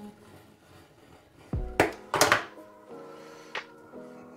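Background music with steady held tones, and two short scraping noises about two seconds in as the tough cloth covering is pulled off an electrical wire.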